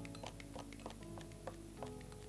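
Scissors snipping parsley inside a glass, a quick run of faint clicks about three or four a second, under soft background music with held notes.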